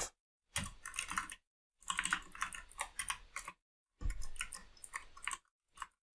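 Typing on a computer keyboard in three short bursts of keystrokes with pauses between them, and one last keystroke near the end.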